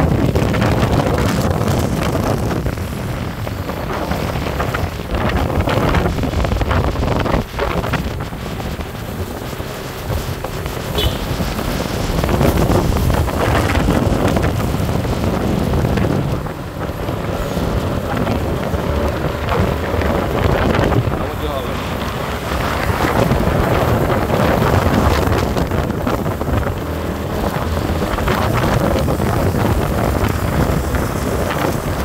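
Wind buffeting the phone's microphone on a moving motorcycle, over the Yamaha motorcycle's running engine and road noise. The rush rises and falls throughout.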